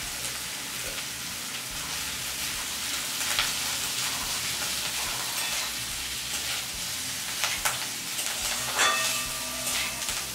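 Oil sizzling in a wok as mashed boiled potato is stirred and broken up with a metal spatula. The spatula scrapes against the pan now and then, several times near the end.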